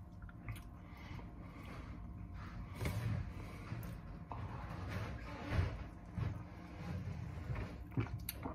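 A man quietly sipping soda from a glass, with a few soft sounds from handling the glass and swallowing.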